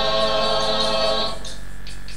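A choir singing a Kikongo song, holding one long chord that ends about a second and a half in. A light percussion tick goes on about five times a second after the voices stop.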